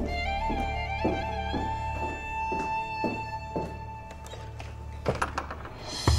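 Dramatic background score: a held violin note with vibrato over a slow, even pulse of soft beats about twice a second, thinning out in the second half, with a few sharper clicks near the end.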